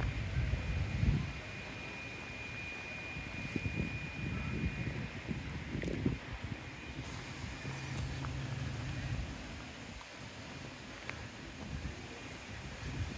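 Outdoor ambience with wind rumbling unevenly on the phone's microphone. A faint steady high whine runs through the first few seconds, and a few soft clicks come later.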